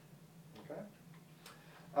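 A pause in speech: room tone with a steady low hum, a quiet spoken "okay?" under a second in, and a faint click about a second and a half in.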